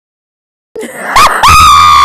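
Silence, then about three-quarters of a second in, a very loud, high-pitched human scream: a short rising yelp, then a long held shriek.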